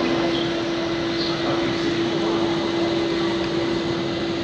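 Steady ambient noise with a constant low hum running through it, unchanging in level.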